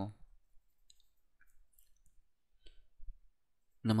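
A few faint, scattered clicks from a computer mouse as the document is scrolled, the strongest about three seconds in, over near-quiet room tone.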